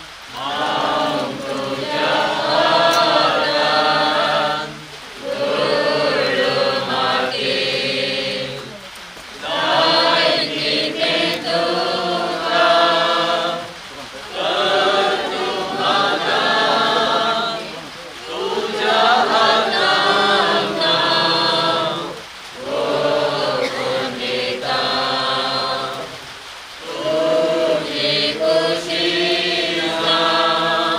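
Mourners singing a hymn together, unaccompanied, in phrases of about four seconds each with a short breath between them.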